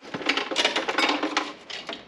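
Rapid metallic clinking and rattling of chain and metal parts as an engine hung from a workshop engine crane is worked into place; the clatter is densest in the middle and thins out near the end.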